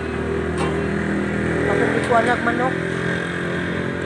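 An engine running steadily, with voices talking briefly about halfway through.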